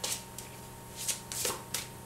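A deck of oracle cards being shuffled by hand: several short, quick swishes of card on card.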